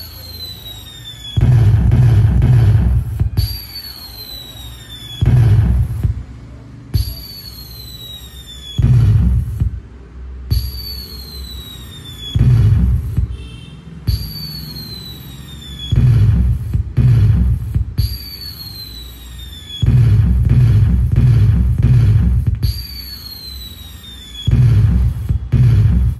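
Firework sound effects from a pixel LED cracker-tree controller with sound, played through a speaker. Each cycle is a falling whistle of about a second, then a loud low burst, and the cycle repeats about every three and a half seconds.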